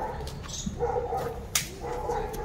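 Black Labrador retriever giving two drawn-out, whiny barks, with a single sharp click between them.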